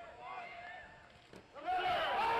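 Faint voices of a ballpark crowd talking, dropping low about a second in, with a single soft click, then voices rising again near the end.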